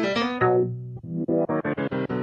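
DJ mix music: keyboard chords fade out, then about a second in a chord is cut into short repeated stabs in a fast rhythm, played from the DJ controller's performance pads.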